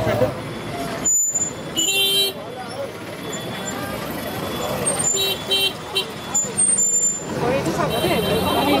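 Short electric vehicle-horn beeps, one about two seconds in and a quick pair about five seconds in, over street noise and voices.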